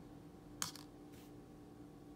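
A folding knife with titanium and G10 handle scales set down on the stainless-steel platform of a digital pocket scale: one sharp click about half a second in, then a much fainter tap just over a second in, over faint room tone.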